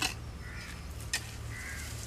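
Two sharp strikes of a hand digging tool on hard, stony ground, about a second apart, with faint crow caws between them.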